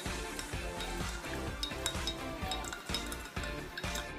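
Background music, with a spoon stirring milky coffee in a mug and clinking lightly against its side.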